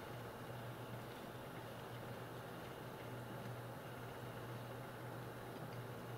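Faint room tone: a steady low electrical hum over a soft hiss, with a couple of very faint ticks near the end.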